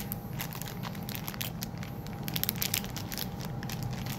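Crinkling and crackling of a small clear plastic bag handled and pulled open by hand: a rapid run of small crackles, busiest in the second half.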